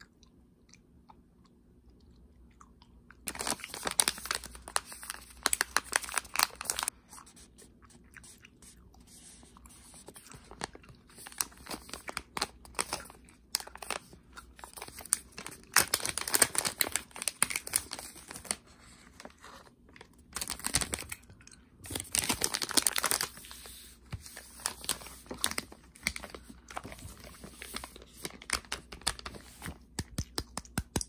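A foil-lined plastic candy pouch crinkling as it is handled and turned over in the hands, starting about three seconds in and coming in irregular crackling bursts, loudest around the middle and again a little later.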